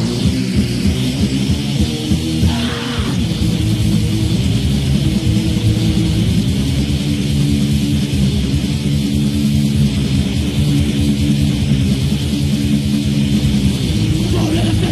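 Heavy metal band playing live, kicking in suddenly with electric guitars, bass and drums in a loud, dense instrumental intro with no vocals.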